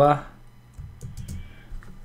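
A few presses of computer keyboard keys, about a second in and again near the end, entering the shortcut that opens the emoji picker.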